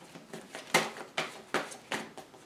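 A deck of oracle cards shuffled by hand, overhand: five short strokes, roughly one every half second, as packets of cards fall from hand to hand.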